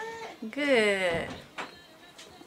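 A woman's wordless voice, a sliding, sung-sounding note that rises and then falls away about half a second in, followed by a faint click.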